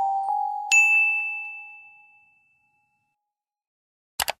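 The closing bell-like notes of a soft chime melody ringing out, with one bright ding struck about a second in that fades away over the next second or two.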